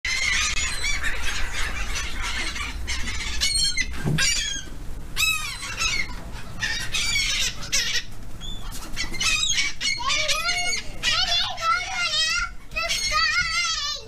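A flock of gulls calling close overhead: many short, overlapping squawks and cries, coming thicker and faster in the second half.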